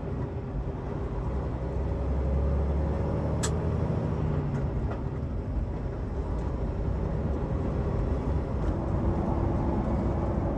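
Diesel semi-truck engine and road noise heard from inside the cab as the truck pulls onto the freeway and gets up to speed: a steady low rumble, with one sharp click about three and a half seconds in.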